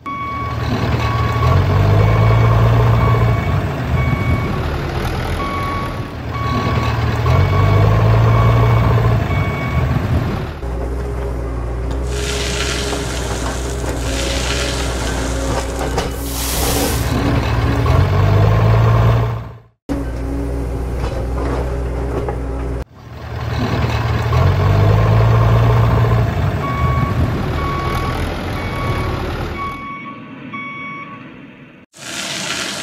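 Truck engine sound revving up and down, with a regular series of reversing beeps over it in the first part and again near the end. In the middle comes a hiss of sand sliding out of the tipping dump trailer.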